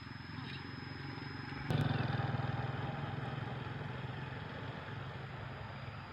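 Motorcycle engine running while riding along, a steady low drone. About two seconds in there is a click and the engine grows suddenly louder, then slowly eases off.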